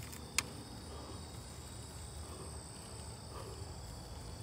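Night chorus of crickets and other insects: several steady high-pitched trills holding on without a break. A single sharp click sounds about half a second in.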